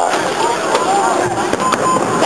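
Fireworks going off in the sky: a few sharp cracks and pops, over people's voices.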